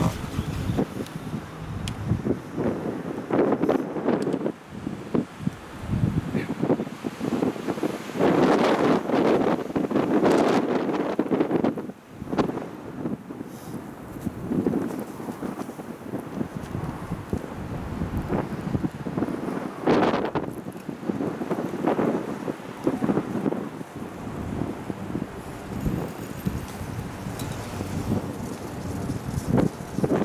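Wind buffeting the microphone of a camera riding an open chairlift, in uneven gusts that swell and fade.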